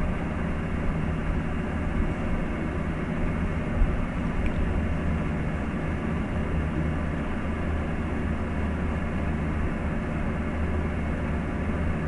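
Steady low hum and hiss of room background noise, unchanging throughout, with one faint tap about four seconds in.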